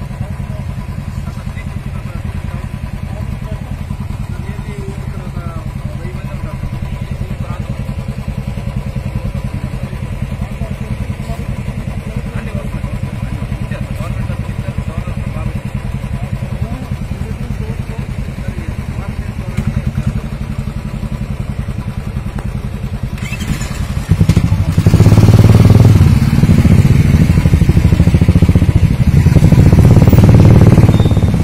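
Single-cylinder Royal Enfield motorcycle engines idling with a steady low thump, then revved much louder about 24 seconds in as the bikes pull away.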